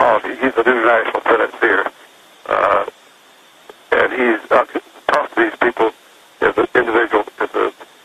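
Speech only: a voice talking in short phrases with brief pauses between them.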